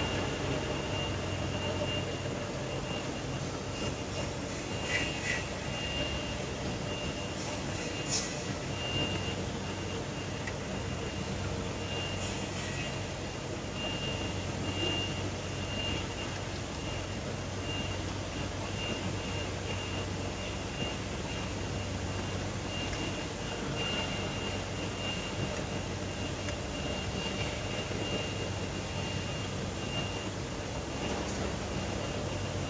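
Steady foundry machinery noise with a low hum, broken by a few faint high beeps and a couple of brief clicks.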